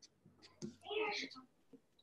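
A brief, quiet snatch of a person's voice over a video call, lasting under a second and starting about half a second in.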